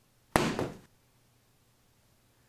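A single thud with a short hissy tail about a third of a second in, dying away within half a second: an edited-in sound effect of a paperback book landing.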